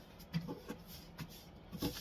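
Card sheets being handled and positioned on a guillotine paper cutter: a few short light knocks and taps, with paper rubbing between them.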